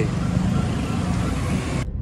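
Street traffic with motor scooters passing close by, an even rush of engine and road noise. Near the end it cuts off suddenly to the duller engine hum heard inside a moving car.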